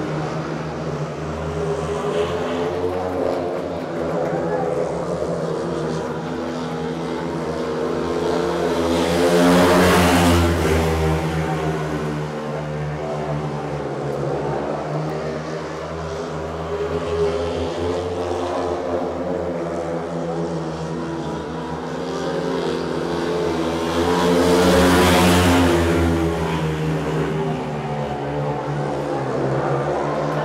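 Speedway motorcycles racing, their single-cylinder engines running hard together; the sound swells loudly twice, about fifteen seconds apart, as the pack passes close by on successive laps.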